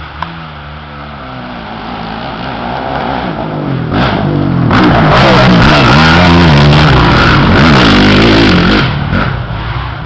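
Dirt bike engine approaching and revving up and down repeatedly, getting louder over the first half. It is loudest in the second half as the bike climbs a dirt bank close by, then eases off a little near the end.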